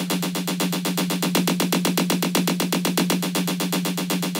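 Playback of an electronic instrument part from Kontakt 5: one steady low note with a rapid, even pulsing texture. It runs through Cubase's MixerDelay, with the left channel delayed 10 ms so it sounds super wide.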